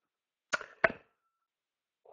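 Two sharp knocks about a third of a second apart as a metal cup is picked up, with a faint thin ringing tone lingering briefly after the second knock.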